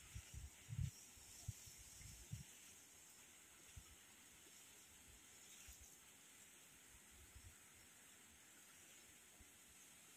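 Near silence: a faint steady hiss of open-air background, with a few soft low thumps in the first two and a half seconds.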